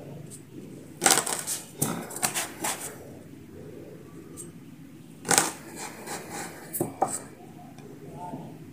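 Red plastic cup used as a round cutter, pressed and twisted down through rolled scone dough onto a wooden table, giving short clusters of taps and scrapes about a second in, around two to three seconds in, and twice more in the second half.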